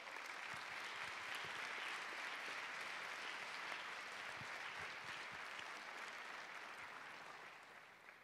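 An auditorium audience applauding. The applause builds over the first second or so, holds, then slowly dies away.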